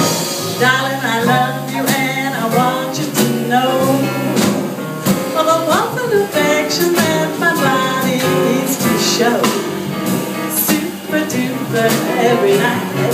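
Live small-group jazz: a woman singing into a microphone over piano, plucked double bass and drums.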